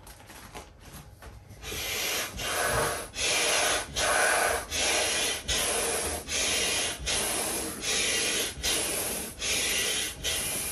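Yellow hand air pump being worked up and down to inflate an orange vinyl dinosaur sprinkler: a rhythmic rush of air with each stroke, a little over one a second, starting about two seconds in.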